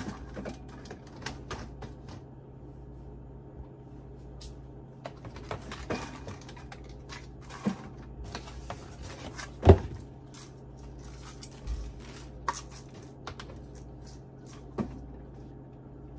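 Groceries being unpacked from a cardboard box and set on refrigerator shelves: scattered light clicks and knocks of plastic containers, with one louder thump near the middle, over a steady low hum.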